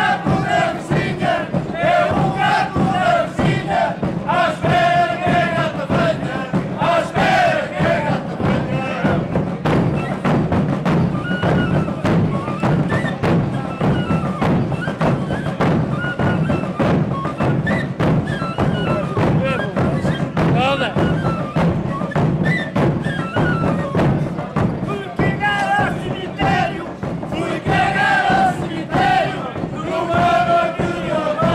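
Several large rope-tensioned bass drums (bombos) beating steadily and densely, with men singing in loud, chant-like voices over them at the start and again near the end. A small fife plays over the drumming in the middle stretch.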